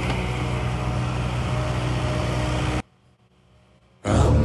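Kubota KX080-4 excavator's diesel engine running steadily under work with a timber grab. It cuts off abruptly after about three seconds, leaving near silence.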